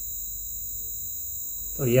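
Steady high-pitched trilling of crickets, running on without a break, over a faint low hum. A man's voice starts again at the very end.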